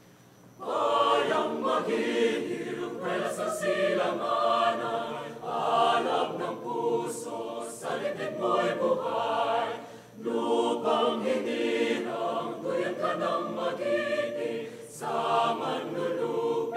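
Mixed choir singing in Filipino, coming in together on the conductor's cue about half a second in, with short breaths between phrases.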